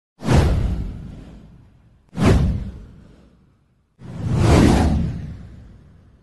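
Three whoosh sound effects from an animated title intro. The first two, about two seconds apart, start sharply and fade out over about a second and a half. The third, about four seconds in, swells up more slowly and then fades away.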